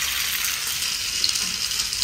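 Masala-coated chicken pieces frying in shallow hot oil in a pan, a steady sizzle.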